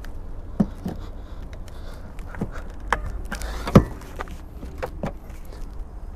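Cold-stiffened DC fast-charger cable plug being worked into a Volkswagen ID.4's charge port: scattered clicks and knocks, the loudest about two-thirds of the way through, over a low steady rumble.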